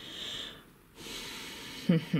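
A woman breathing audibly just after a laugh: a short breath of about half a second, a brief pause, then a longer breath of about a second.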